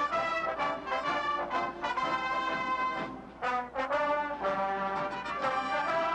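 Brass band music playing held chords, with a brief dip about three seconds in.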